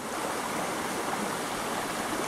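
Shallow rocky creek running over stones: a steady rush of water.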